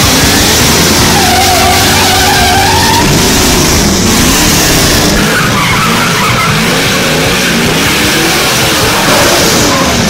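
Muscle-car engines revving hard with tyres squealing and skidding through burnouts and slides, loud throughout, the squeal wavering up and down in pitch.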